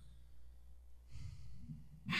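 A person sighing, one soft breath out lasting under a second about halfway through, over a steady low hum.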